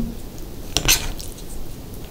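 Cutlery against a dish: a short burst of clinks and scraping about a second in, as a bite of the rice casserole is scooped up.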